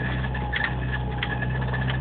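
Jeep Wrangler YJ engine running steadily at low trail speed, heard from inside the cab, with a few faint clicks and a thin steady high tone over the drone.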